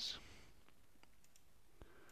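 Near silence: faint room tone with a single soft click near the end.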